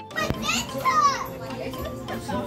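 Young children's voices at play: two short, high-pitched cries in the first second, then lower background chatter.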